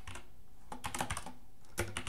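Typing on a computer keyboard: small bursts of quick key clicks with short pauses between.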